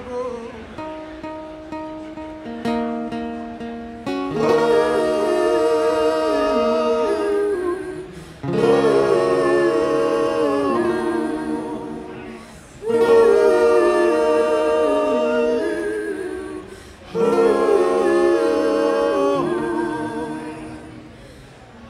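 Live folk band: several voices singing wordless harmonies together over acoustic guitar. A quieter passage of held notes gives way about four seconds in to four long, loud sung phrases of about four seconds each, each entering abruptly.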